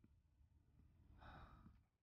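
Near silence: faint room hum, with one soft exhale, a breath or sigh, just past the middle.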